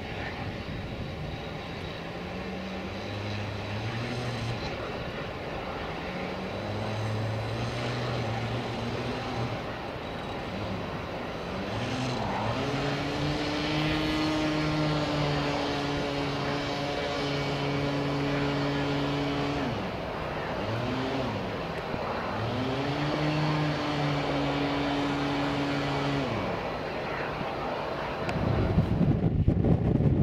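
Engine hum at an airfield, holding a few steady pitches that twice dip and rise again, with loud wind buffeting on the microphone near the end.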